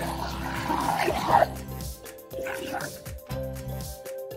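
Background music over water splashing and sloshing in a plastic tub as a toy is scrubbed clean, with a man's short laugh.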